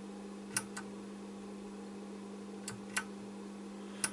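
Loudness pushbutton on a Kenwood KA-3700 amplifier's front panel being pressed and released, four short clicks in two pairs, about half a second in and again near three seconds, over a steady low hum.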